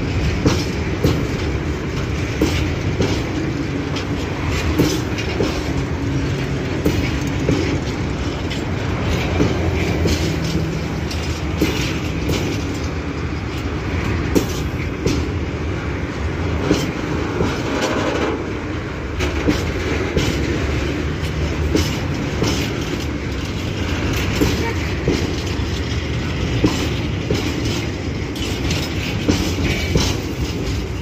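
Freight train of old four-axle Zaes-z tank wagons rolling past close by: a steady rumble of steel wheels on rail with frequent irregular clicks and knocks from the wheels and running gear, and a brief wheel squeal a little past halfway.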